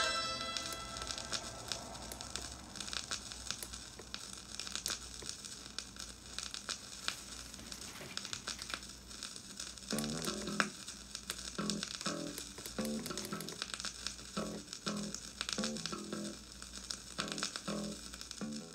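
Vinyl record surface noise on a turntable: steady crackle and small pops in the quiet groove after a song ends. About halfway through, soft plucked notes come in, repeating every second or so.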